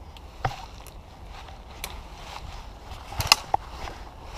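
Scattered snaps, crackles and knocks of footsteps through undergrowth and leaf litter, a few sharp cracks with the loudest cluster a little after three seconds in.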